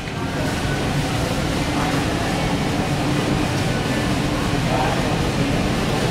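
Pride Jazzy Zero Turn 10 mobility scooter driving on its two electric motors: a steady low hum over a constant background hiss.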